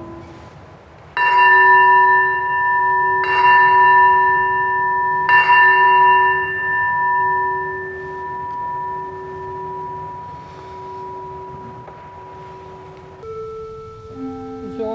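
Consecration bell struck three times about two seconds apart, each stroke ringing on and fading slowly, marking the elevation of the host after the words of consecration. An organ note comes in near the end.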